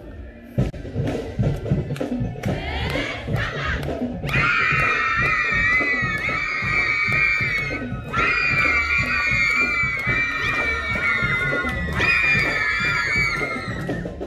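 Marching band drums keeping a beat between brass tunes, with a group of high voices over them holding three long shouts of about four seconds each.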